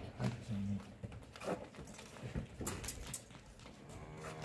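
Holstein cattle giving two short, low moos near the start, followed by a few scattered sharp knocks.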